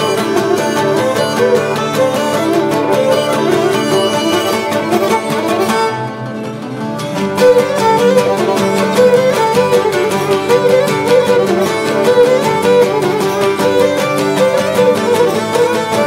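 Live Cretan traditional music: a bowed Cretan lyra plays a fast melody over plucked lutes strumming a steady rhythm. The music thins briefly about six seconds in, then comes back fuller.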